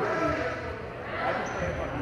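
Indistinct voices of players talking across a large gym, with dull thuds of balls bouncing on the hardwood floor.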